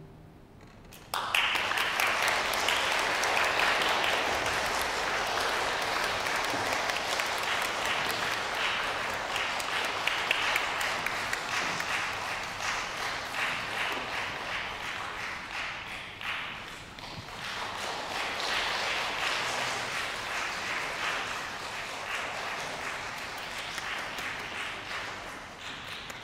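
Audience applauding, starting about a second in after the final chord of a string and piano piece has died away, holding steady, then thinning out near the end.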